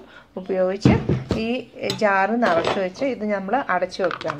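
A woman talking: continuous speech with only a brief pause just after the start.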